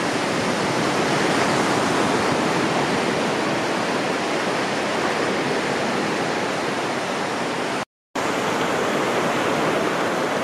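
Steady rushing of sea surf breaking along the shore. It drops out to silence for a moment about eight seconds in, then carries on as before.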